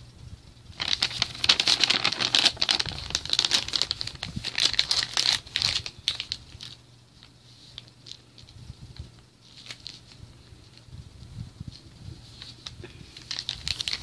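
Plastic MRE flameless ration heater bag crinkling as it is handled and folded around a food pouch after water has been added; the crinkling is loudest from about a second in to six seconds, then drops to fainter rustles.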